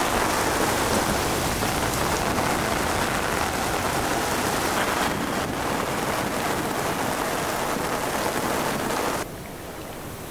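Steady rain falling on a sailboat and dripping from the edge of its canopy. About nine seconds in, it gives way suddenly to a quieter, steady rush of wind and sea.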